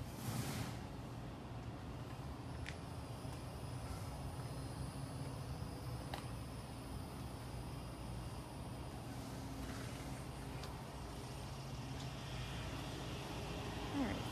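A steady low mechanical hum, with a short rustle just after the start and a few faint clicks.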